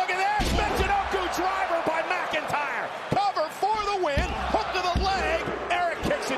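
A wrestler is slammed onto the canvas of a wrestling ring, a heavy thud just after the start, with further thuds about three and four seconds in. Under the thuds, an arena crowd shouts and cheers throughout.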